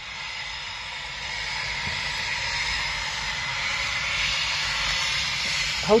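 Eurofighter Typhoon's twin jet engines at taxi power, heard at a distance as a steady hiss that grows gradually louder about a second in and then holds.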